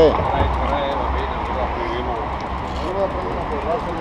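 Background chatter of a group of cyclists talking among themselves, several voices at once and none clear, over a steady low rumble.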